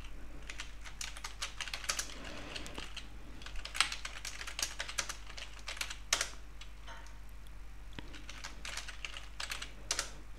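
Typing on a computer keyboard: uneven runs of keystroke clicks with short pauses between them, over a faint steady low hum.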